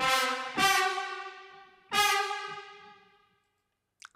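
Sampled trumpet ensemble from the Metropolis Ark 3 library playing clustered chords from a keyboard. Three chords start sharply, the second about half a second after the first and the third near two seconds in, and each fades away in a reverberant tail.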